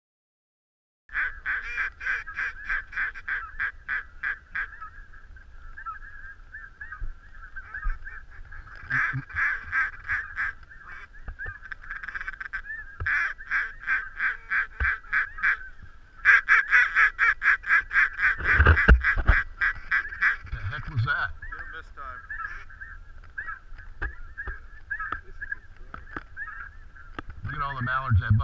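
A flock of geese honking, with loud runs of quick calls several a second rising out of a steady chatter of more distant birds.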